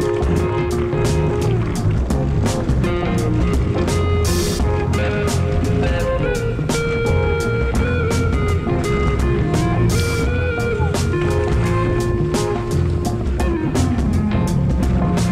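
Background music with a steady drum beat, held melodic lines and occasional cymbal crashes.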